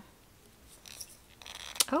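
Faint scratching of a fingernail picking a price sticker off a small plastic bead jar, then a single light plastic click near the end.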